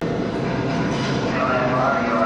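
Recorded ambience of a busy exhibit hall: a steady rumble and hum with a murmur of voices, cutting in suddenly.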